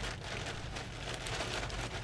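A hand scooping ice cubes out of a plastic bag: a steady crackle of plastic crinkling and ice shifting.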